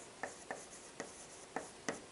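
Chalk tapping and scratching on a chalkboard as words are written by hand: a string of short, irregular taps, about five in two seconds.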